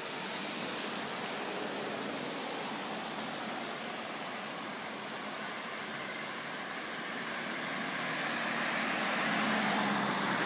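Steady rushing outdoor noise of road traffic, with a car approaching and its tyre and engine noise growing louder over the last couple of seconds.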